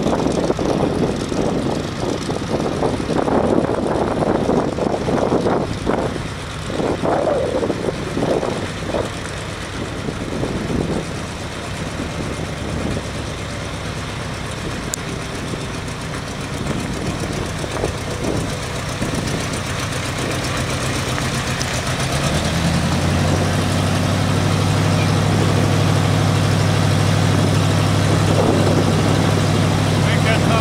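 1974 International Harvester L800 truck engine running, growing louder as the truck comes closer; about three-quarters of the way through it settles into a steady idle close by.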